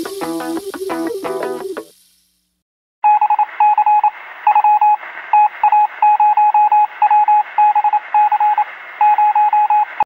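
Background music fades out, then about a second of silence. Then comes a run of short electronic beeps at one steady pitch, grouped unevenly like Morse code, over a faint hiss.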